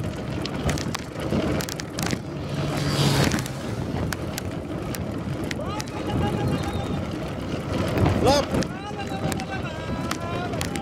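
Wind rushing over the microphone of a bicycle moving fast along a road, over a steady hiss of tyre and road noise. A brief voice is heard about eight seconds in.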